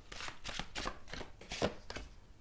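A deck of tarot cards being shuffled by hand: a run of short papery slaps and flicks, the loudest about one and a half seconds in.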